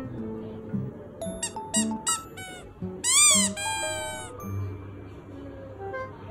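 Background music, with a ragamuffin kitten's high-pitched mews over it: a few short squeaky calls in the first half, then a louder rising-and-falling meow about three seconds in, followed by a shorter one.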